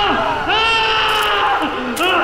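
Drawn-out wailing cries: one call fades out at the start, and a second, longer one begins about half a second in, rising and then falling in pitch.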